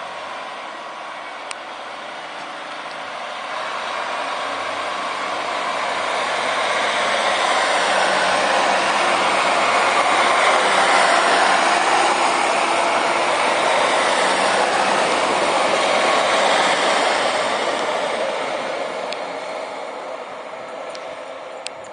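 British Rail Class 150 Sprinter diesel multiple unit pulling away from a station: its underfloor diesel engines and wheels on the rails grow louder as it accelerates past, loudest from about halfway through, then fade as it draws away.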